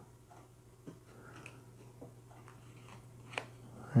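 Faint handling of thin cardboard strips and tape as they are fitted together: quiet crinkles and a few small clicks, the sharpest about three and a half seconds in, over a low steady hum.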